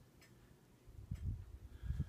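Faint handling noise in a quiet room: a few light clicks and soft low thumps from about a second in.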